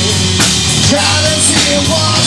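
Live rock band playing: drum kit, electric guitars and bass guitar through amplifiers, with drum hits on a steady beat.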